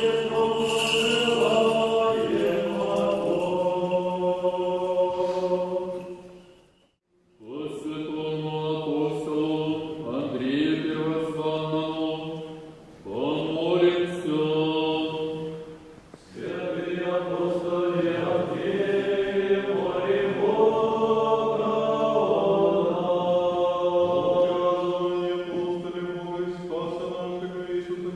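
Slow sung chant: several voices hold long notes over a sustained low drone, breaking off briefly about seven seconds in.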